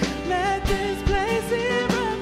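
A woman singing lead into a microphone over a live worship band, her held notes wavering, with drum hits cutting through.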